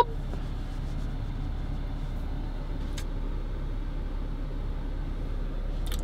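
Steady low rumble of a Jeep's running engine heard from inside the cabin, with one faint click about halfway through.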